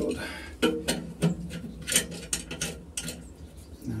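Small metal clicks and scrapes from hand-fitting compression-fitting parts, a nut and olive, onto the gas pipework, with a brief mutter about a second in.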